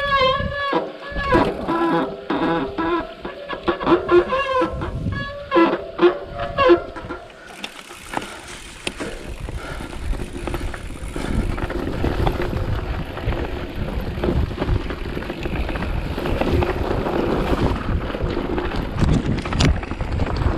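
Loud wavering pitched sounds for about the first seven seconds, then a mountain bike rolling down a rough dirt singletrack: wind on the microphone with a steady low rumble and scattered knocks from the tyres and frame over bumps.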